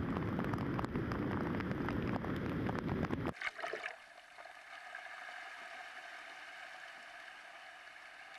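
Hurricane-driven surf breaking, with strong wind buffeting the microphone: a loud, crackling low rumble for about three seconds that drops away suddenly, leaving the fainter steady hiss of churning water.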